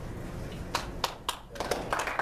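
A few people start clapping: scattered single claps from about three-quarters of a second in, quickening into a light patter of applause near the end.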